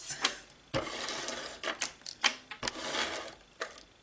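Paper-craft handling sounds: two rasping, scraping strokes about a second each, with sharp clicks between and around them, as a card is worked against a cutting mat with a handheld craft tool.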